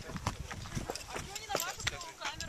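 Irregular knocks and scuffs of shoes stepping on rock, with voices talking in the background.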